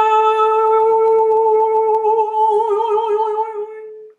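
A woman's voice holding one long sung note as light language toning, steady at first, then wavering in pitch before it breaks off at the very end.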